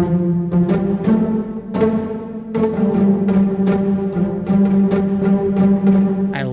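Spitfire Audio Epic Strings pizzicato string samples played from a keyboard: a string of plucked notes, each fading after its attack, with a little click in the pluck.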